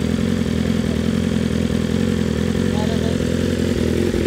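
BMW RR superbike's inline-four engine idling steadily, with no revving.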